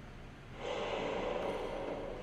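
A person's long, heavy breath, starting about half a second in and holding steady.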